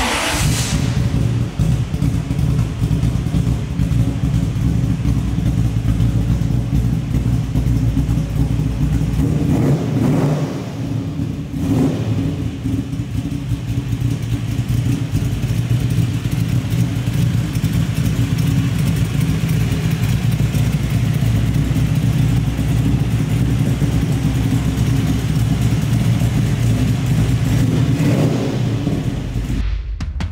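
The engine of a 1932 Ford roadster hot rod running with a steady, deep rumble, with a couple of short throttle blips about a third of the way in.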